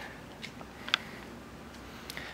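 Low, steady background noise with one short, sharp click a little before the middle.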